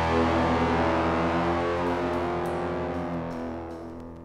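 A last electric guitar chord held at the end of a punk song, ringing out and fading steadily away.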